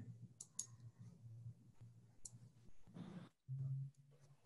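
A few faint clicks at a computer as a screenshot is taken, over a low steady hum, with a short louder low hum near the end.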